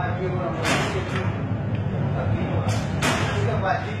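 Steady low hum of a glass workshop under indistinct voices, broken by four quick sharp swishes, about a second in and twice near the three-second mark.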